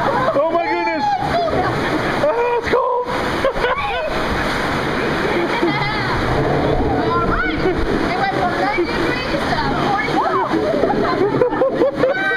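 Rushing white water splashing against a river-rapids raft, a steady churning wash throughout, with voices calling out over it at times.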